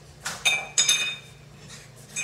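Two sharp clinks with a bright ringing tone, about half a second apart, like a hard object striking glass or metal.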